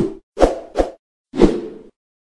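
Logo-reveal sound effects: four short popping hits in quick succession, the last one ringing out for about half a second before it stops.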